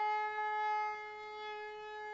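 A conch shell (shankh) blown in one long, steady note, a little quieter after about a second.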